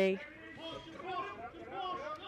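Speech only: a male voice finishes a word at the start, then quieter voices keep talking.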